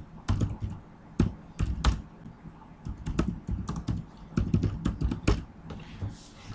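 Typing on a computer keyboard: quick, irregular runs of key clicks with short pauses between them.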